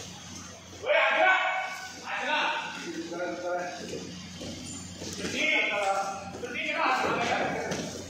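Short bursts of men's voices calling out three times in a large hall, over a steady low hum.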